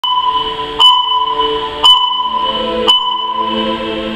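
Electronic countdown sound from a laser show soundtrack: a sharp click and ping struck four times, about a second apart, each ringing on as a steady high tone. A low sustained synth chord swells in about halfway through.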